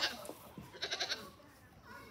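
Pygmy goat bleating: a short, quavering bleat about a second in, just after the tail of a louder one.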